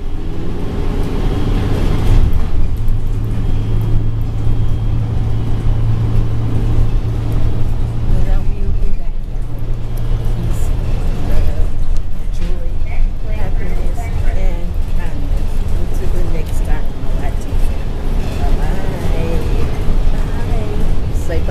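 City bus engine and road rumble heard from inside the moving bus, with a steady low engine hum through the first half that drops away about eleven seconds in.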